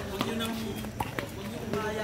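Indistinct chatter from people courtside, with a few light knocks.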